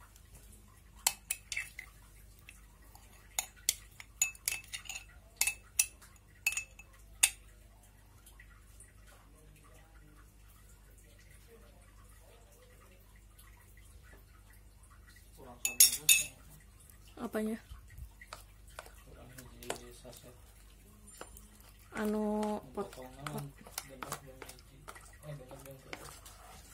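A spoon clinking and scraping against a glass jar and a stainless steel bowl as ground onion and garlic paste is knocked out, in a quick run of sharp ringing clinks over the first several seconds. A louder clatter comes about halfway through, then lighter clinks as a thick paste is stirred in the metal bowl.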